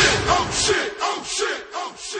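End of a hip-hop track: the beat stops under a second in, leaving shouted group vocals that repeat several times, each fainter than the last, as the song fades out.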